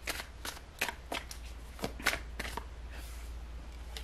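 Tarot cards being shuffled by hand: a run of irregular, light card snaps and clicks, about three a second.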